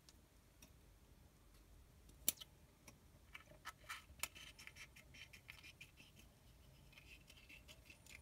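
Small scissors cutting a slit in a leathery ball python egg, heard as faint scattered snips and clicks, with one sharper click a little over two seconds in.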